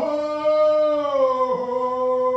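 A man chanting one long held note, a little higher for about a second before settling back down near the end.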